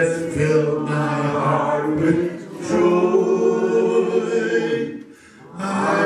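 A man singing a slow gospel hymn unaccompanied into a microphone, holding long notes, with short breaths between phrases about two and a half and five seconds in.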